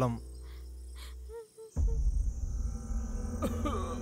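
Insects chirring: a steady high drone that starts suddenly a little under halfway in, over a low rumble.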